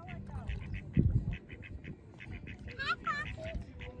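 Ducks at the water's edge making a quick run of faint beak clacks with a soft quack near the end. A brief low thump comes about a second in.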